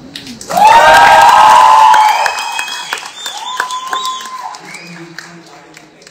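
Large audience cheering and screaming with applause. It bursts out loudly about half a second in, holds for about a second and a half, then dies down to scattered whoops and claps.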